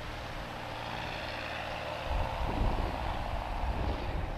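Steady drone of a distant propeller aircraft engine, with a low rumble growing stronger about halfway through.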